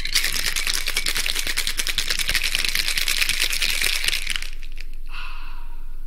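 Cocktail shaker with ice shaken hard, a fast, even rattle of ice against metal. Near the end the rattle stops and a short ringing, glassy tone follows.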